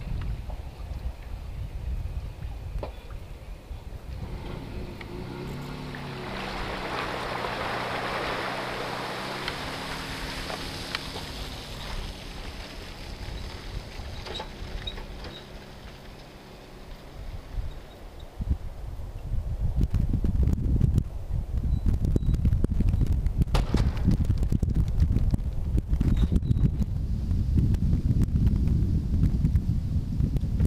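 A boat slides off its trailer with a rush of water while the pickup truck's engine runs and shifts in pitch as it pulls up the ramp. About twenty seconds in, wind starts buffeting the microphone and stays the loudest sound to the end.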